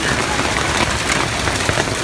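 Hail pelting down on wet pavement: a dense, steady clatter of many small impacts.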